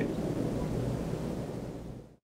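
A steady rushing noise, with a faint low hum under it, fading out gradually and cutting off at the end.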